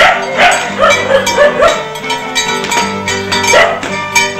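Dance music with held notes over a steady bass. Over it a dog barks in quick strings, several barks in the first second and a half and again near the end.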